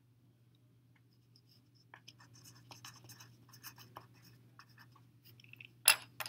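Pencil writing on a paper worksheet: a run of faint, irregular scratchy strokes starting about two seconds in, over a faint steady hum. A sharp tap near the end is the loudest sound.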